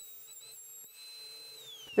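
Router motor on a router table, running with a high, steady whine that wavers briefly about half a second in. Near the end the pitch falls as the motor winds down.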